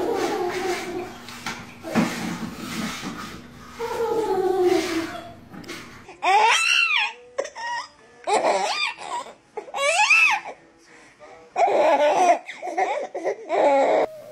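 Young children's voices: toddler giggles and chatter over room noise. Then, after a cut about six seconds in, babies squeal and laugh in short, high-pitched calls that bend up and down in pitch.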